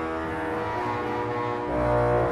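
Historic French classical pipe organ by Jean-Baptiste Micot (1772) playing held chords in a slow polyphonic piece. A low bass note enters near the end and is the loudest moment.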